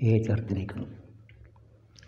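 Chalk clicking and tapping on a blackboard in a few short strokes, after a man's voice in the first second.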